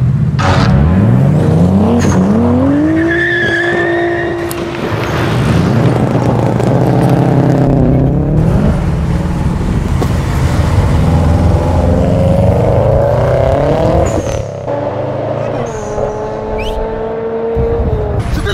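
Car engine revving hard under fast acceleration, loud, its pitch climbing steeply and then holding high, again and again through the drive.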